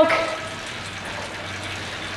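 Steady, even rushing noise with a faint low hum, the running sound of the indoor training setup while the rider pedals hard.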